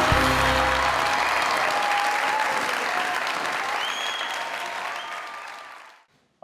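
Studio audience applauding, fading out gradually to silence near the end. The tail of the show's music cuts off right at the start.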